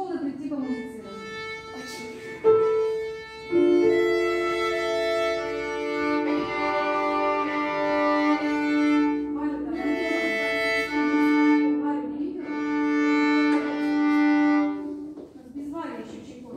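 A children's string ensemble of violins and cello plays slow, held chords in several phrases. It starts a couple of seconds in and breaks off about a second before the end.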